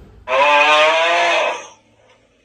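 One long, loud, moo-like call of about a second and a half, holding one pitch and fading away near the end.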